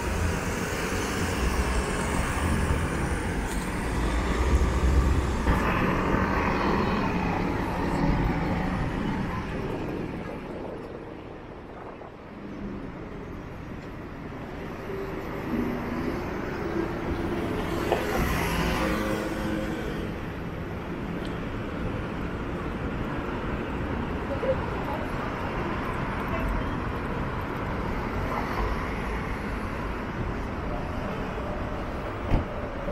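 City street traffic: cars and motor scooters running past in a steady wash of road noise, which eases off around twelve seconds in. About eighteen seconds in, one vehicle passes close, rising and falling.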